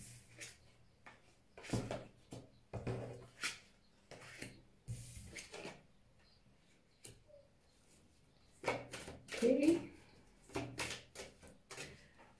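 Oracle cards being dealt and laid one by one onto a tabletop: a string of short slaps and slides of card on table. A few murmured words come about nine seconds in.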